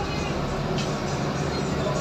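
A passenger ship's engine running steadily, a constant low drone mixed with wind and water noise on deck, with faint voices in the background.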